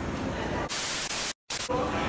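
A burst of static hiss lasting about half a second, broken by a moment of dead silence and then a shorter second burst. It sounds like a TV-static transition effect laid over a video cut.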